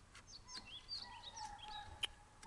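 Faint outdoor birdsong: a run of short, quick chirps and sweeping high calls.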